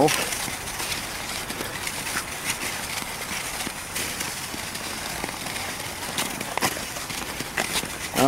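Nordic skate blades gliding over the canal's natural ice: a steady hiss with a few sharper scrapes and clicks as the blades strike and push off.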